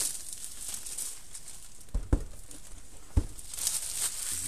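Plastic shrink wrap crinkling as it is pulled off a cardboard board-game box, with a few sharp knocks as the box is handled: two close together about halfway through and one more about three seconds in.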